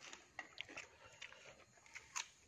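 Faint mouth sounds of a person eating: soft chewing and biting, with a few scattered small clicks.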